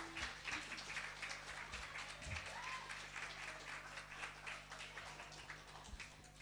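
Small audience clapping, faint and thinning out over several seconds, with a couple of low thumps partway through.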